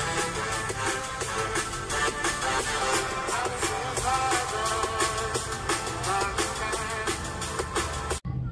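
Electronic dance track with a steady drum beat playing through the Asus Vivobook S16's built-in Harman Kardon-tuned laptop speakers.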